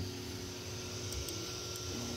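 Creality Ender 3 V3 SE 3D printer homing after an abandoned print: a steady hum of its fans and motors, with a couple of faint ticks about a second in.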